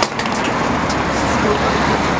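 Steady road traffic noise from a highway, with a few sharp clicks and knocks near the start.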